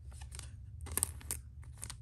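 Cardboard trading cards being handled: a few short, crisp scrapes and ticks of card stock sliding against card and fingers, the loudest about a second in.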